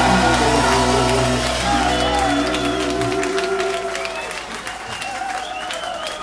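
Live ska band holding a final chord with bass, which stops about two to three seconds in, leaving a club crowd cheering and applauding.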